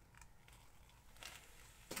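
Near silence with a few faint clicks and rustles as a clear plastic pour cup is lifted off the wet canvas and handled.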